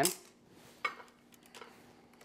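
Dry oven-ready lasagna noodle sheets being laid into a glass baking dish: a sharp click a little under a second in as a sheet taps the glass, and a fainter tap shortly after.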